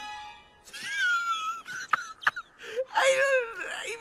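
An animated snowman character's wordless vocal sounds, two of them, gliding up and down in pitch, over soft film-score music, with two sharp clicks about two seconds in.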